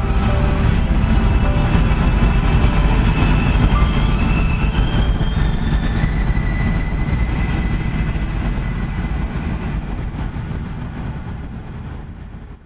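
Low steady rumble of a vehicle driving on the road, heard from inside, with short notes of music over it; it fades down toward the end.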